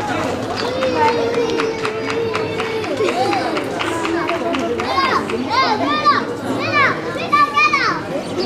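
Onlookers' voices shouting and calling out, with one long drawn-out call starting about a second in and a quick run of short, high-pitched shouts in the last three seconds.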